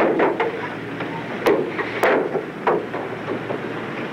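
Steady rushing noise of wind and sea with a surfaced submarine's engines running, broken by several sharp knocks.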